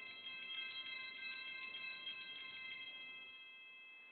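Altar bells (sanctus bells) shaken rapidly for nearly three seconds, then left ringing and fading. They are rung to mark the elevation of the chalice at the consecration.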